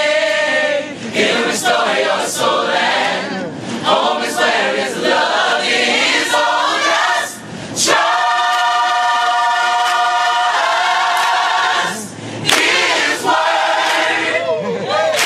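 Gospel choir singing, holding one long chord about eight seconds in for two or three seconds before moving on.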